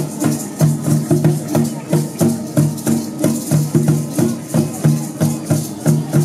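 A mandolin-type string instrument strummed in a fast, even rhythm, about three to four strokes a second, with rattles shaking along in time.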